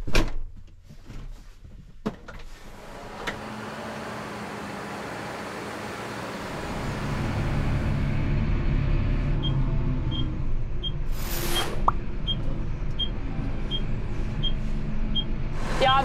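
A tractor cab door shuts with a bang, then the tractor is heard from inside the cab, its engine and driving noise building up and then running steadily. In the second half the turn indicator ticks evenly, a little more than once a second, and a brief whoosh passes about eleven seconds in.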